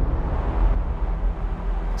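A loud, dense low rumble with a noisy haze above it and no speech. It is an edited-in sound effect that starts abruptly just before.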